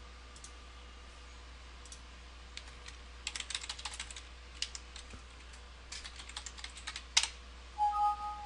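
Typing on a computer keyboard: short runs of keystrokes in the second half, ending in one louder key strike, over a steady low electrical hum.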